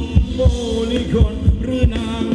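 Live Thai ramwong band music, driven by a deep kick-drum beat about three times a second under a held melody line.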